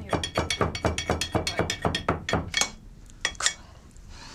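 A pestle pounding spice in a mortar: rapid clinking strikes, about six a second, with a faint ringing. The strikes stop just under three seconds in, followed by a few last taps.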